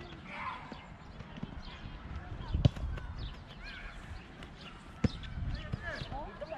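Sharp thuds of a ball being kicked on a grass field, twice, about two and a half and five seconds in, over distant voices chattering.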